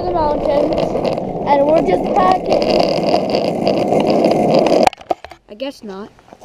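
A child talking over a loud, steady rushing noise, which cuts off suddenly near the end.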